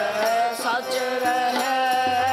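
Sikh kirtan music: a long held sung melody line that bends in pitch, with a quick swoop about a second in, over accompaniment with light percussion strokes.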